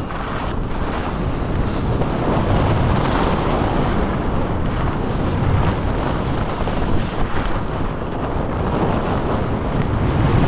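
Wind rushing over the microphone of a camera carried by a skier moving downhill, with the hiss of skis on snow underneath. It grows louder over the first few seconds as speed picks up, then holds steady.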